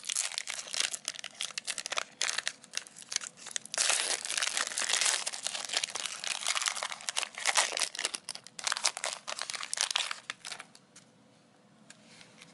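Foil wrapper of a Score 2020 NFL trading card pack being torn open at its crimped end and peeled apart by hand: a dense run of crinkling and tearing crackles that stops about ten seconds in.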